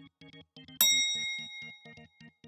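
A bright ding chime, the quiz's correct-answer sound effect, strikes about a second in and rings out, fading over about a second. Underneath, a light background music track of short repeating notes keeps going.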